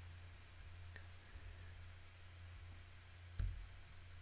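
Computer mouse clicks over a faint steady low hum: a light click about a second in and a louder one about three and a half seconds in.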